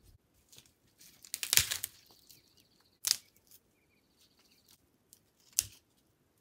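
Dry dead twigs and branches crackling and snapping as a person steps and pushes through brush. A long crackle comes about a second in, then single sharp snaps near the middle and near the end.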